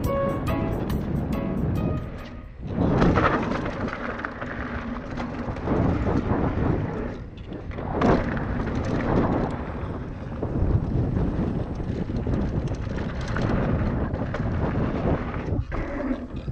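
A few last notes of a chiming music cue fade out over the first two seconds. Then wind buffets the camera microphone and knobby mountain-bike tyres rumble over a dirt trail as a hardtail rolls downhill, loud and dense, with short lulls.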